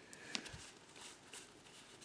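Quiet room with a few faint, short ticks and rustles of Pokémon trading cards being handled and fanned out.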